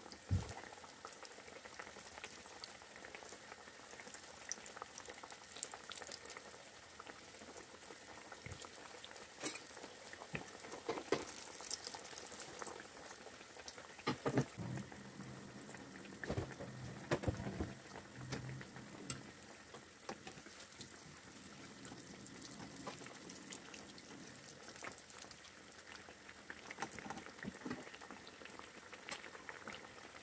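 Potato patties (maakouda) deep-frying in a pan of hot oil: a steady sizzle and bubbling, with scattered louder pops and crackles as more patties are laid into the oil.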